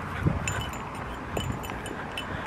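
Light, scattered metallic tinkling over low wind rumble on the microphone.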